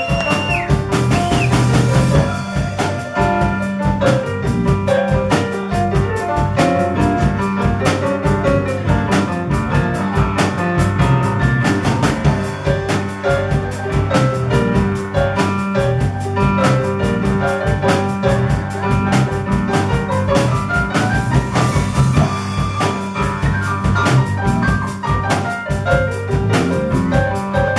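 Live band music: a Nord Electro 4 HP stage keyboard plays a lead of quick runs of notes over a steady drum beat and bass.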